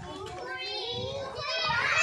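Young children's voices calling out together during a ring game, a few at first, then many overlapping and louder near the end.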